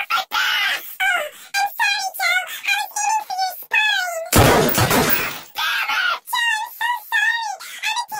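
Cartoon dialogue pitch-shifted very high, heard as quick, warbling, squeaky voice phrases. A loud harsh burst comes about four and a half seconds in.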